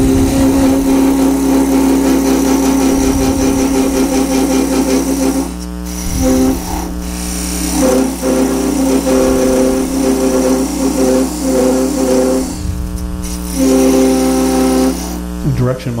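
A thick parting tool cutting into a wooden blank spinning on a lathe, giving a loud, steady pitched whine from the vibration the thick blade sets up. The whine breaks off a few times, around six, seven and thirteen seconds in, as the tool eases out of the cut. A steady hum from the lathe runs underneath.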